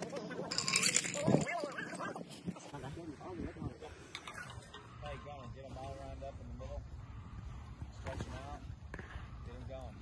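Faint, indistinct talk of people in the background, with a short rush of noise about a second in.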